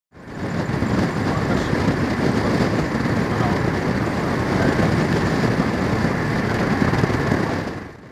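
Steady rushing of wind and road noise from a moving vehicle, heard through an open window with wind buffeting the microphone. It fades in at the start and drops away just before the end.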